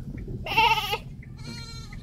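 Goats bleating to each other, twice: a loud, wavering bleat about half a second in, then a higher, fainter one near the end.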